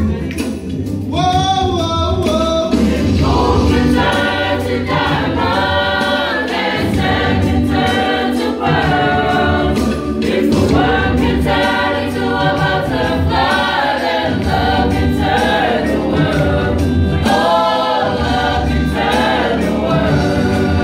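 A youth choir of young women and men singing a gospel song together, the voices going on without a break.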